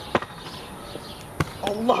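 A single sharp thud about one and a half seconds in, after a lighter click near the start, over faint background noise.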